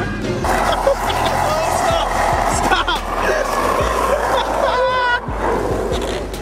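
Music with a voice singing or calling over it, mixed with the steady low rumble of a moving car heard from inside the cabin.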